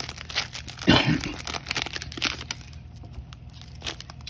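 Foil card-pack wrapper crinkling and tearing as it is ripped open by hand, with baseball cards handled and rustling; the loudest rustle comes about a second in, followed by quieter crackling.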